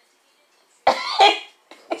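A person coughs loudly twice in quick succession about a second in.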